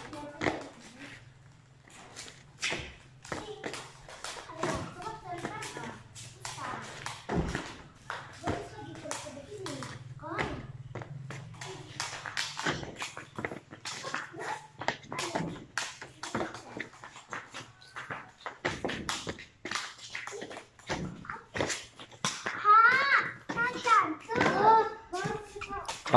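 Repeated irregular thumps and taps of a child's feet jumping onto and off wooden steps, over a faint steady low hum, with voices talking, loudest near the end.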